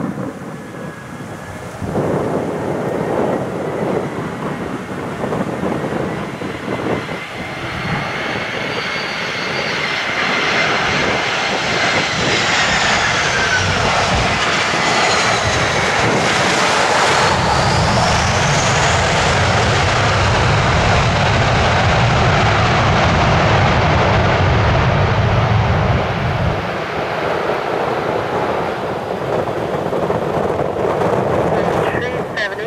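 Twin jet engines of an American Airlines Airbus A320-family airliner landing, with a rising engine noise as it nears. About halfway through, a whine falls in pitch as it passes, and a deeper, louder rumble follows for several seconds on the rollout, typical of reverse thrust.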